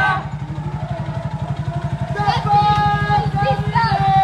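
A small engine running steadily at low speed close by, a continuous low pulsing rumble. In the second half a voice calls out over it.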